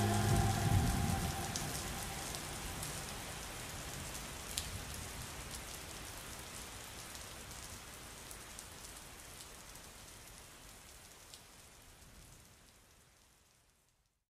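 The song's final notes die away within the first second, leaving a steady rain-like patter of noise with scattered small ticks that fades gradually to silence about twelve seconds in.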